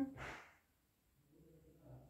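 A person's short, breathy exhale like a sigh, in the first half-second, while an acupuncture needle in the back is being twisted.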